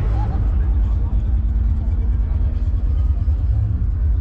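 Outdoor background noise at a car show: a steady low rumble with a faint, even hum held through most of it.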